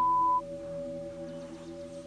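A short, pure, steady beep of about half a second at the start: a TV censor bleep over spoken words. After it there is a faint, steady, low drone.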